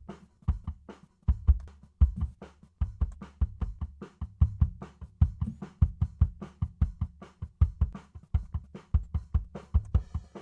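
Multitracked acoustic drum kit playing back from a DAW mixing session: kick, snare and hi-hat in a steady groove, with the kick drum prominent.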